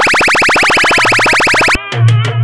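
Synthesized DJ remix effect: a loud, rapidly pulsing electronic buzz at about seventeen pulses a second replaces the dance beat. It cuts off abruptly near the end.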